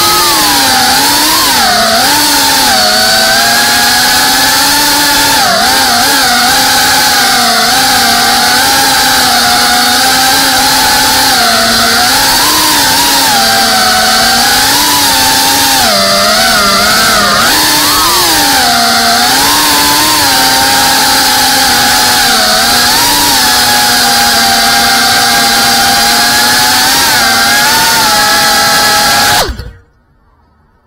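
GEPRC Cinelog 35 cinewhoop's brushless motors and ducted propellers whining in flight, the pitch rising and falling as the throttle changes. The motors stop abruptly near the end.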